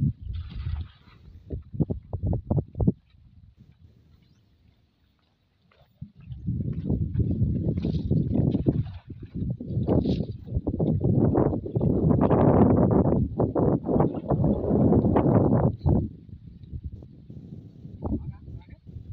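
Muddy water splashing and sloshing around a man wading waist-deep while he hauls in a cast net by hand. There are short splashes at the start, a brief lull, then a longer stretch of heavier, irregular splashing.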